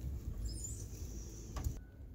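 Quiet background with a low rumble, a few faint high chirps about half a second in, and one sharp click about one and a half seconds in.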